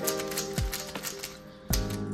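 Rapid plastic clicking of a MoYu RS3M V5 3x3 speedcube being turned over and over to work in freshly added lube, over background music with two deep beats.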